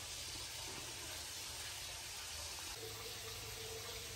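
Water from hoses running steadily into aquariums as they are topped off, an even, faint rushing hiss.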